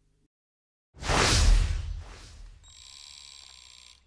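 A news outro sound effect: a loud whoosh about a second in, fading into a steady high tone that holds to the end.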